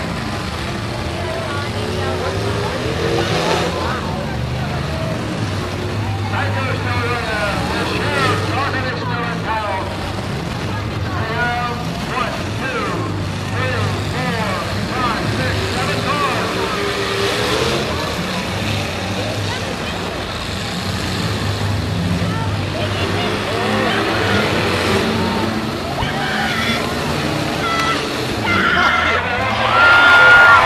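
Demolition derby cars' engines running and revving in the arena, heard under a grandstand crowd shouting and talking.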